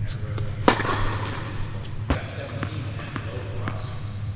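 A tennis racket striking the ball on an indoor court, with sharp pops that echo in the hall. The loudest comes just under a second in and another about two seconds in, with lighter ball bounces and knocks between them.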